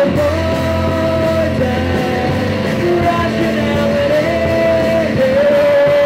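Live rock band playing: a male lead vocalist sings a melody in long held notes over electric guitars, bass and drums.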